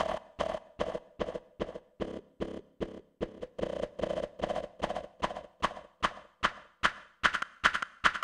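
Synthesized hi-hat line from a Kilohearts Phase Plant sampler patch driven by a random modulator: a quick run of short, glitchy hits at about four a second, each differing in tone and brightness, so the pattern never repeats exactly.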